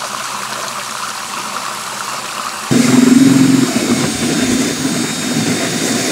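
Bora-Care concentrate pouring into water in a bucket while a drill spins a plastic mixing impeller in it. A little under three seconds in, the drill's motor whine and the churning of the liquid get suddenly louder and stay steady.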